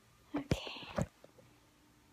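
A woman's brief, soft whispered utterance, a breathy hiss under half a second long, framed by two sharp clicks about half a second and a second in.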